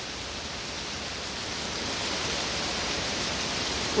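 Heavy downpour of rain, a steady dense hiss, growing slightly louder about halfway through.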